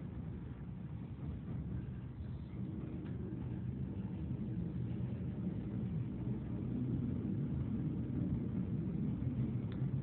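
Steady low rumble inside a subway car as the train runs, growing a little louder in the second half.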